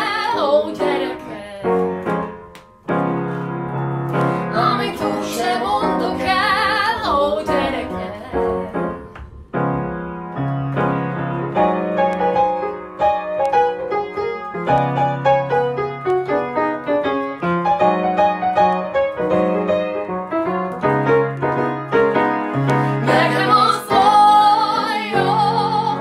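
A grand piano accompanying a woman singing with vibrato. Her voice stops after about seven seconds and the piano plays alone until she comes back in near the end.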